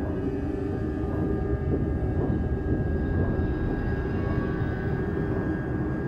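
A dark, steady low drone from a thriller trailer's soundtrack, with a faint high tone held above it.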